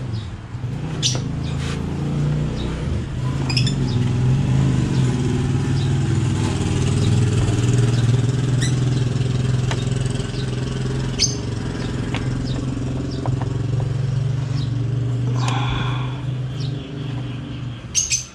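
A steady low engine hum that swells towards the middle and eases off near the end, with a few light clicks and faint bird chirps.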